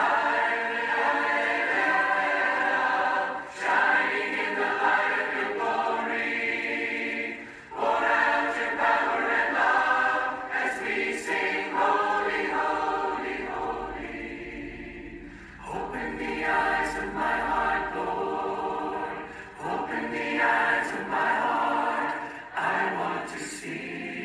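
A choir singing a slow hymn in long phrases with short breaths between them; the words heard around it are "I want to see you".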